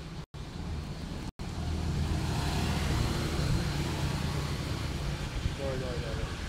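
Road traffic passing, mostly motorbikes: a steady low engine and tyre rumble that swells about two seconds in and then holds. The sound cuts out twice briefly near the start.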